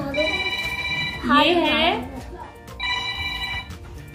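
A telephone ringing: two steady electronic rings, each about a second long, about two and a half seconds apart.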